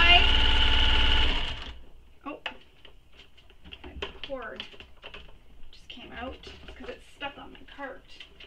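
Domestic sewing machine running steadily as it top-stitches a fabric strap, stopping about a second and a half in. Then faint clicks and rustles of the strap being handled.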